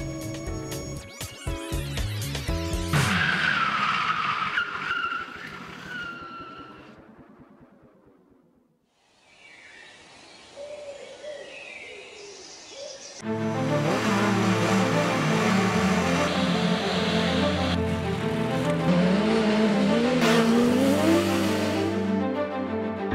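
BMW S1000XR inline-four engine revving hard with tyre skids, laid over music. The sound fades almost to nothing about eight or nine seconds in, then the engine and music come back loud about thirteen seconds in.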